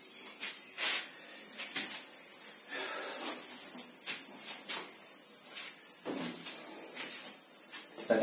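Steady high-pitched chorus of crickets, with a few faint clicks over it.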